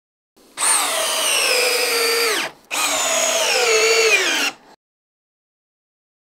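Two compact brushless DeWalt Atomic 20V cordless drills, one after the other, each driving a 3-9/16-inch PowerLag screw in under two seconds. In each run the motor's whine drops in pitch as the screw goes in under load, then stops.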